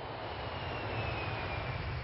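Jet airliner engine noise: a steady rumble with a faint high whine slowly falling in pitch.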